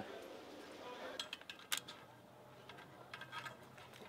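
Faint, light metallic clicks and clinks from small tools and sheet metal being handled on a workbench, bunched about one to two seconds in, while the metal is being fluxed for soft soldering.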